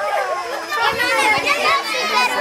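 A crowd of children's voices, many talking and calling out at once in high pitch, excited and overlapping.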